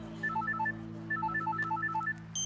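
Mobile phone ringtone: quick runs of short electronic beeps at a few pitches, coming in bursts with short gaps between them.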